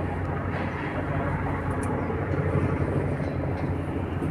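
Steady outdoor background noise with a low rumble, unchanging throughout.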